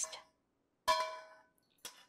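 A single metal clink about a second in, ringing briefly, as the wok and metal spatula knock against the stainless steel grinder cup while toasted chilies and Sichuan peppercorns are tipped in; a faint second tick near the end.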